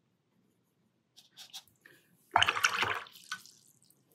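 Paintbrush swished in a jar of rinse water, a short splashy burst lasting under a second, with a few light ticks just before it and a single clink just after.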